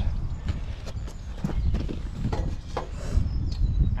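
Brick trowel tapping a freshly laid clay brick down into its mortar bed: a string of light, irregular knocks over a steady low rumble.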